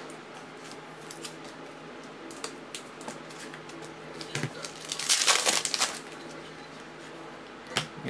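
Foil trading-card pack wrappers crinkling and cards being handled, with small clicks and a louder burst of crinkling about five seconds in.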